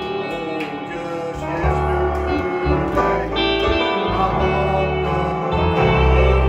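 Live instrumental music: an electric guitar playing over long, held low bass notes.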